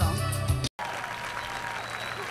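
Live jazz band music that breaks off abruptly less than a second in, followed by an audience applauding over faint music.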